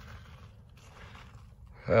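Faint, even outdoor background noise with no distinct event. A man's voice starts speaking near the end.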